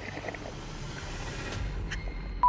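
Underwater background noise picked up through a camera's underwater housing: a steady hiss with a low rumble that grows a little stronger near the end.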